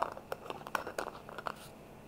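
Small glass spice jar of ground mahlab being handled and tipped out over a glass bowl of flour: a quick run of faint, irregular light clicks and ticks over the first second and a half.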